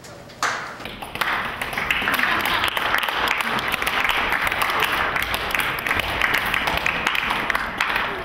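Applause from a crowd of onlookers, starting suddenly about half a second in, swelling over the next second and continuing to near the end, with voices mixed in.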